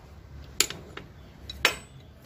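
Two sharp metal clinks about a second apart, the second louder with a short ring: steel hand tools and brake parts being handled and set down while a Lambretta's brake-shoe pivots are taken off the back plate.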